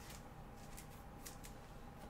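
Faint rustles and light clicks of trading cards being handled and slid out of a pack, a few short strokes, over a faint steady tone.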